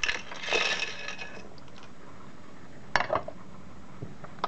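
Small disassembled circuit-breaker parts clattering and jingling for about a second and a half, then a single sharp knock about three seconds in, followed by a few lighter taps.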